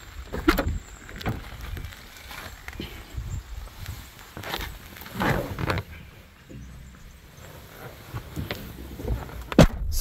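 Handling noises at a Mazda RX-8: footsteps on gravel, the driver's door being opened and a person climbing into the seat, with scattered clicks and rustles and one sharp knock near the end.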